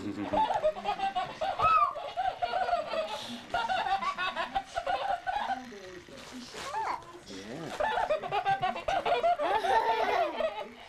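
A young child chattering and laughing in a high voice, on and off, with no clear words.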